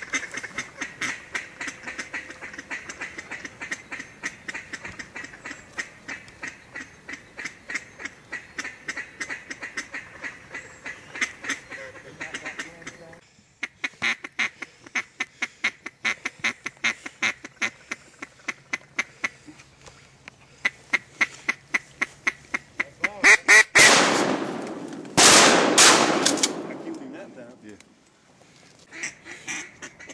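Ducks quacking continuously, many calls in quick succession, with a short break about halfway through. Near the end two much louder bursts of noise drown out the calls for a few seconds.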